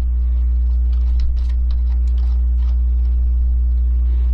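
A steady low hum runs throughout and is the loudest sound, with faint small clicks and scrapes as a compact LED video light is fitted onto a hot shoe mount adapter on a metal camera cage.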